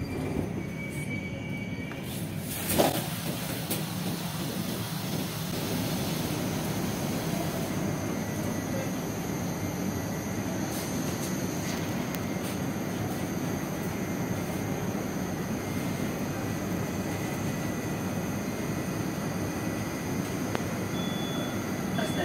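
Steady background noise inside a Moscow metro train car, with one sharp knock about three seconds in.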